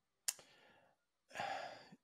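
A short click about a quarter second in, then a person's audible intake of breath lasting about half a second near the end.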